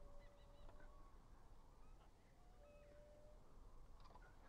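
Near silence, with a few faint, short whistle-like calls scattered through it.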